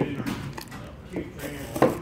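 Cardboard box being handled, lifted off a table and moved, with a sharp knock near the end, over faint background voices.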